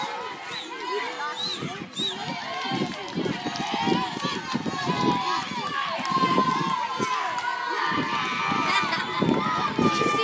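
Race spectators shouting and calling out over one another as runners pass, several voices at once, with irregular low thuds from about two and a half seconds on.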